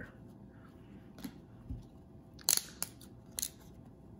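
Glossy 2006-07 Upper Deck hockey cards being slid off a stack one at a time. The cards stick together and peel apart with a handful of short, crisp clicks and snaps, the loudest about two and a half seconds in.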